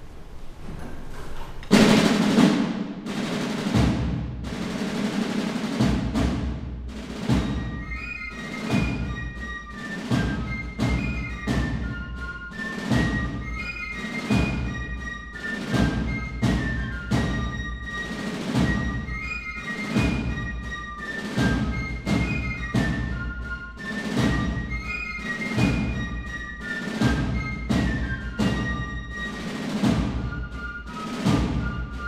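Military band playing a march: a loud crash about two seconds in, then a steady marching drum beat under a high melody line.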